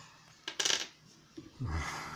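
A brief metallic clink about half a second in: a small metal bullet knocking against a hard surface as it is handled.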